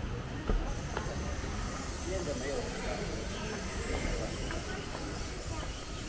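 Street ambience with voices of passers-by in the background and a low rumble, and a steady high hiss that comes in about a second in.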